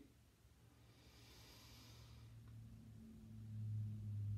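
A faint deep breath drawn in through the nose about a second in, then a low steady hum that slowly grows louder.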